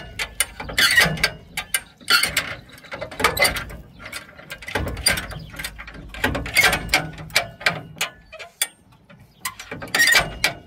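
Original 1960 Ford bumper jack being lowered by working its handle up and down, the ratchet mechanism clicking and clanking in clusters about once a second with each stroke, briefly quieter near the end.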